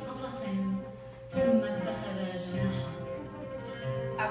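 Oud played solo: a line of plucked, ringing notes, with a louder plucked note about a second and a half in.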